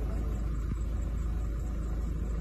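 Steady low rumble with no distinct events.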